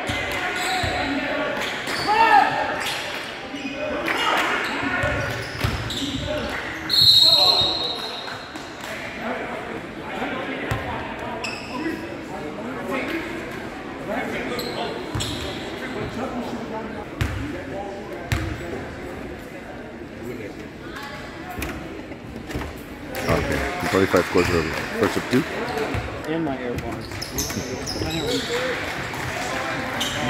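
Basketball bouncing on a hardwood gym floor amid players' and spectators' voices echoing in the hall, with a short high referee's whistle blast about seven seconds in.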